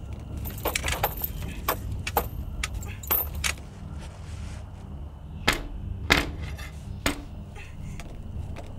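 A steady low rumble with a series of sharp clicks and rattles scattered over it, the loudest two about five and a half and six seconds in.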